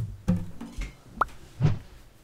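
Acoustic guitar strumming cuts off at the start, leaving a few faint handling sounds and a single short, rising plop about a second in.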